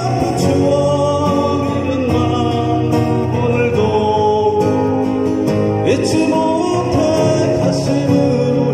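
Live amplified acoustic guitar duo playing a song, steady throughout.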